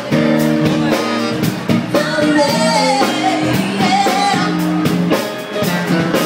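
Live band with electric bass and drum kit playing a steady groove, a woman's voice singing over it through a microphone in the middle of the stretch.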